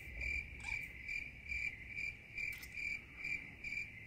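Cricket-chirping sound effect: a steady, high-pitched chirp repeating about twice a second, the stock "crickets" gag for an awkward silence.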